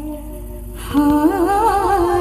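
Recorded devotional song playing over the stage sound system: a female voice holds one low, hummed note, then about a second in a louder sung line with a wavering, ornamented melody comes in over a steady held tone.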